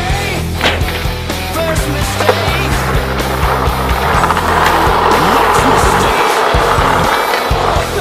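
Skateboard wheels rolling on concrete skatepark ramps, the rolling noise growing louder in the middle, with sharp clacks of the board against the concrete, over a background music track.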